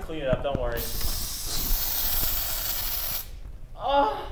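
An aerosol can of silly string spraying in one steady hiss of about two and a half seconds.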